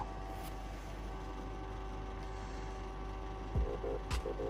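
Steady low electrical hum with faint hiss: room tone with no activity. Near the end, background music with a beat starts.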